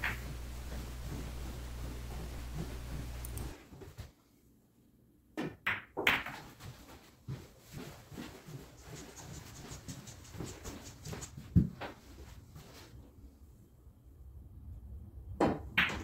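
Pool balls in play: sharp clacks of the cue striking and balls colliding, a pair about five and six seconds in, then scattered softer knocks and another clear click near the end of the middle stretch. A steady low hum fills the first few seconds and cuts off abruptly.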